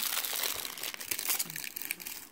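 Close crinkling and rustling: a dense run of small crackles that dies away near the end.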